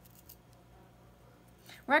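A few faint, light clicks of a small plastic vial of glass microhematocrit capillary tubes being handled in gloved hands, then a woman starts speaking near the end.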